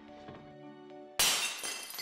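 A white ceramic plate smashing on a hard floor, one sudden loud crash about a second in, with the pieces ringing as it fades. Light background music plays beneath it.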